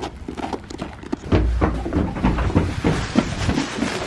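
Footsteps crunching on gravel. A loud low rumble of wind on the microphone comes in about a second in and lasts a couple of seconds.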